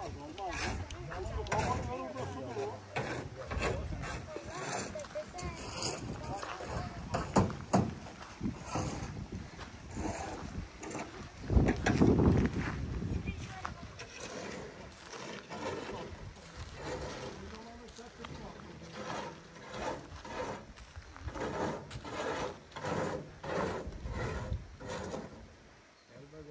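Footsteps on a gravel road, with men's voices talking at a distance and a louder low rush of air on the microphone about twelve seconds in.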